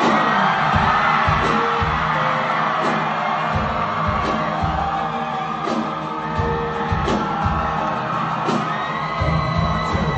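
Live pop-rock song played loud through the venue's sound system, with singing over a steady drum beat, heard from among the audience.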